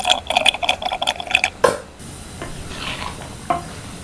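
Thick tomato gravy in a steel pan bubbling with rapid loud pops for about two seconds. After that, a spatula stirs the gravy more softly, with a single knock about three and a half seconds in.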